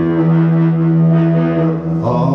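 Live experimental music: a steady low droning note held through, with electric guitar.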